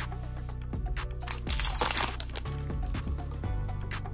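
A foil trading-card pack wrapper crinkling as it is torn open, loudest in a rustle from about one and a half to two seconds in. Background music with steady bass notes plays throughout.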